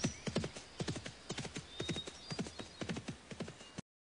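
Horse hooves clip-clopping at an uneven walking pace, about three or four knocks a second, cutting off suddenly near the end.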